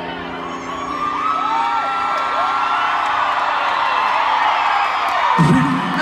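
Large concert crowd cheering, with many high-pitched screams and whoops, over a fading chord. The music comes back in near the end.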